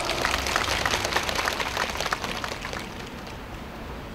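An open-air crowd applauding, the scattered clapping dying away over about three seconds.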